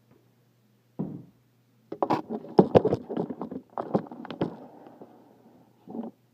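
Collapsed aluminium telescoping ladder being handled and set down: a thump about a second in, then a quick run of sharp metallic clacks and knocks for a couple of seconds, fading into a rustle.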